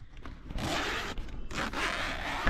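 A zipper being pulled along the fabric cover of a folding solar panel, a scraping sound that runs on in stretches from about half a second in.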